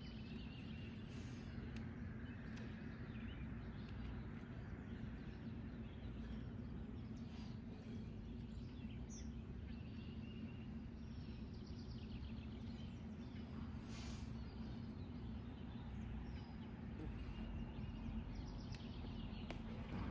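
Outdoor ambience: a steady low background rumble with faint bird chirps scattered throughout.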